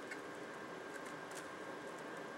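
Quiet steady room hiss with a faint hum, and a few faint ticks from hands tightening a small plastic wheel onto an RC plane's landing-gear rod.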